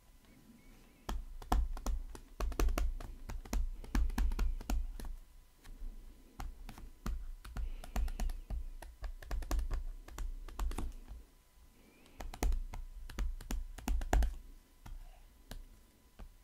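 A pen stylus clicking and tapping on a tablet screen while writing by hand: a quick, irregular run of sharp clicks with soft low knocks, broken by two short pauses.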